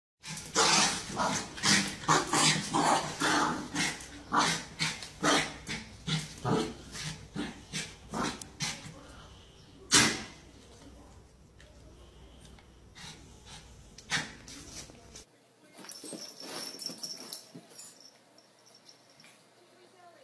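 A dog barking over and over in quick bursts for the first several seconds, with one loud sharp sound about ten seconds in; quieter toward the end.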